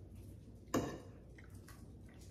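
A fork knocks once against a plate of scrambled eggs, a short sharp clink about three quarters of a second in, with a few faint small ticks around it.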